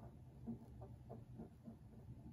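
Near silence: a low room hum with a few faint, soft scrubbing strokes of a cotton swab rubbing acetone on the plastic of a disc.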